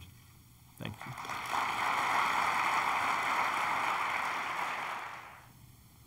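Audience applauding. It swells about a second in, holds steady, then dies away shortly before the end.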